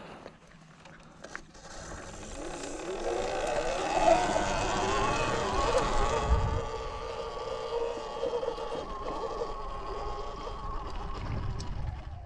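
Sur-Ron Light Bee X electric dirt bike's motor whining, rising in pitch as the bike picks up speed, then holding a steady whine while cruising, over a low rumble.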